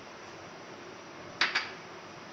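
A glass bowl knocking against the rim of a steel cooking pot as the last of the vermicelli is tipped in: a brief sharp double clink about one and a half seconds in, over a steady low hiss.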